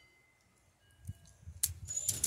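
A single sharp click from an SNR-357 CO2 air revolver being handled, about a second and a half in, over faint handling noise.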